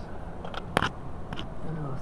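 Three short, sharp clicks, the loudest a little under a second in, over a low steady hum.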